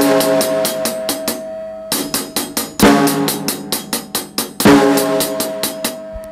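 Drum kit groove: fast, even sixteenth-note strokes on the hi-hat, with loud snare backbeats that ring on, and bass drum. The hi-hat strokes carry on through each backbeat, the left hand doubling up so the right hand can cross over to the snare, with a short break in the playing a little after a second in.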